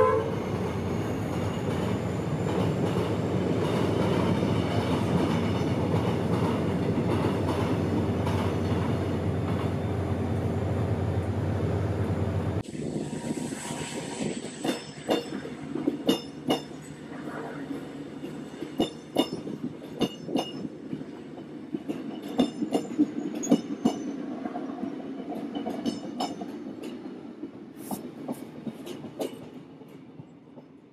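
Passenger train running past: a loud, steady rumble of wheels on track for about the first twelve seconds. After a sudden change, a quieter stretch of wheels clicking sharply over rail joints follows, fading as the train moves away.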